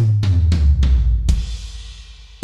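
Sampled acoustic drum hits from a wet drum kit, recorded in a big room with room mics and reverb, triggered one after another: a deep drum hit whose low boom rings on, a few quicker strikes, then a cymbal crash about 1.3 seconds in, each trailing a long reverb tail.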